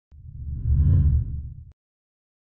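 Deep whoosh sound effect that swells to a peak about a second in, then fades and cuts off abruptly.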